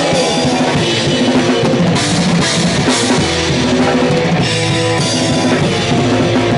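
Live hardcore punk band playing: distorted electric guitar chords over a fast drum kit beat, with cymbals crashing from about two seconds in.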